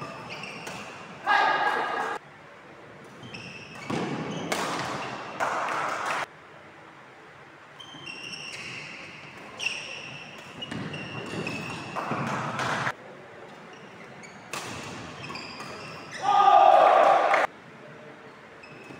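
Doubles badminton rally on a wooden indoor court: shoes squeaking and racquets striking the shuttlecock, with loud shouts, the loudest about a second and a half in and again near the end.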